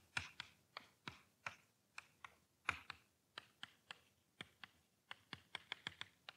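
Chalk tapping on a chalkboard while a line of math is written: faint, short, irregular taps and clicks. In the last second they come quickly, in a run of about five, as a row of dots is added.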